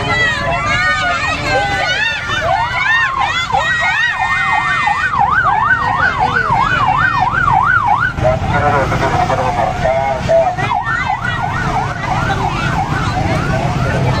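Police siren in a rapid up-and-down yelp, about three sweeps a second. It breaks off about eight seconds in and starts again near ten and a half seconds. Underneath is a low rumble of motorcycle engines.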